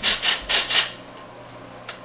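Metal hand flour sifter rasping as flour and dry ingredients are worked through its mesh, in about three strokes in the first second, then quieter.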